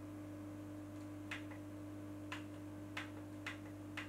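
Buttons on a YC Onion Pudding V2 pocket RGB LED light clicking five times at uneven intervals as its colour modes are switched, over a steady low hum.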